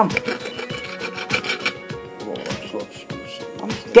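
A table knife sawing a sliver off a cooked ostrich steak: rasping, scraping strokes with short clicks against the board or plate, over steady background music.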